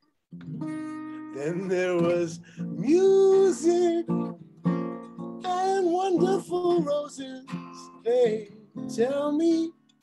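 Acoustic guitar strummed and picked, with a voice carrying a wavering melody over it in short phrases. It starts after a brief pause.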